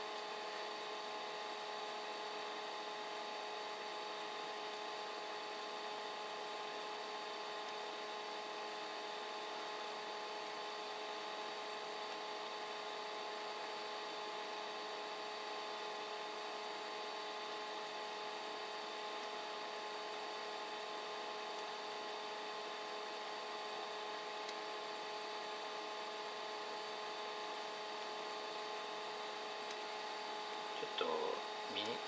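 Steady machine hum with several high, unchanging whining tones over a light hiss.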